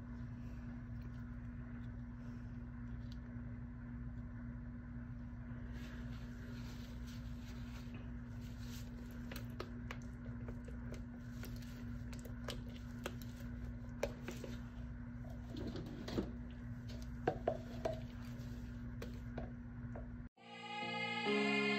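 Steady low hum of room noise, with light clicks and knocks from about six seconds in as a spatula and plastic pitcher of soap batter are handled; a few sharper knocks come near the end.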